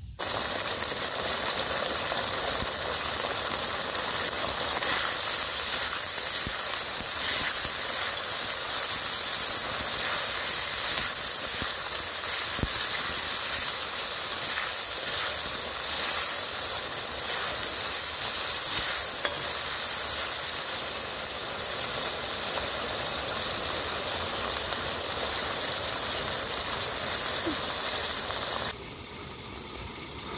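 Dung beetles sizzling in hot oil in a steel wok while a spatula stirs them; a steady loud sizzle that cuts off suddenly near the end.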